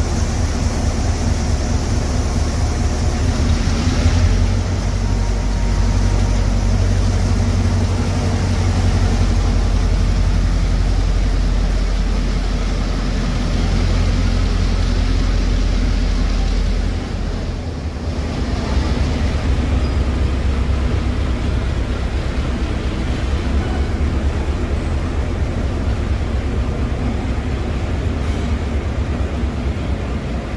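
G8 diesel locomotive's engine running as it moves its train off along the platform: a loud, steady low rumble, dipping briefly a little past halfway.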